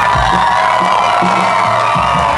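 Rock band playing live at loud, steady volume, with the crowd cheering.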